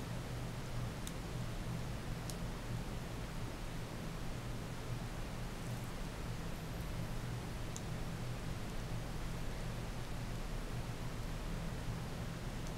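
Quiet room tone: a steady low hum with hiss, and a few faint clicks.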